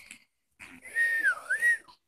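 Pug giving a thin, high whine that dips in pitch and rises back again, lasting just over a second, with breathy noise around it.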